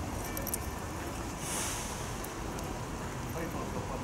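Street ambience of a town square: indistinct chatter of passers-by over a low, steady traffic rumble, with a few faint clicks near the start and a brief hiss about a second and a half in.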